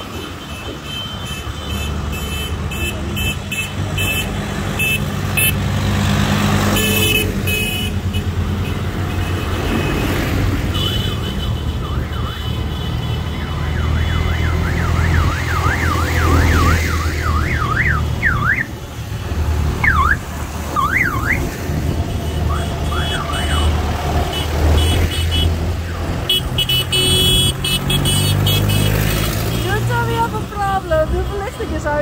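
Tractor diesel engines run with a steady low drone as the tractors pass close by. About halfway through, a warbling siren-like horn sounds for a few seconds, sweeping rapidly up and down, and then gives a few shorter yelps.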